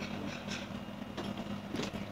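A steady low hum with a few faint clicks and knocks.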